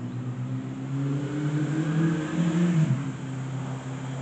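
A motor vehicle's engine passing by: a low, steady hum that grows louder to a peak between two and three seconds in, then drops in pitch and fades to a lower level.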